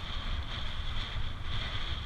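Wind buffeting the microphone of a camera on a fast-moving road bicycle, a heavy gusting rumble, with a steady high-pitched hiss over it.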